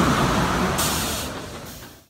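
Rushing whoosh sound effect from an animated logo intro, with a short hiss about a second in, fading away toward the end.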